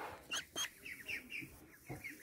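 Young mulard ducklings peeping: a string of short, high, falling peeps repeated through the moment.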